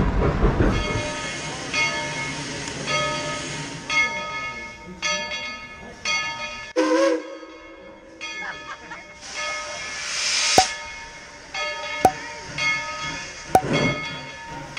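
A narrow-gauge train's passenger car rumbles past and fades away in the first second. A steam locomotive's bell then rings over and over, each strike ringing on, with a hiss of steam about ten seconds in.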